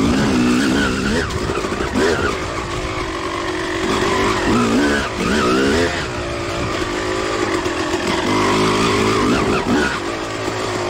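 Suzuki RM250 single-cylinder two-stroke dirt bike engine being ridden, the revs rising and falling over and over with the throttle.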